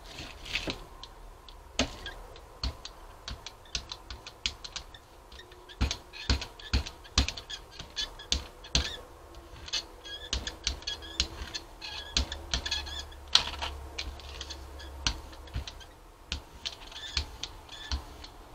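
Hand brayer rolling acrylic paint across a gel printing plate: a sticky, crackling sound with many irregular clicks as the roller works the tacky paint out.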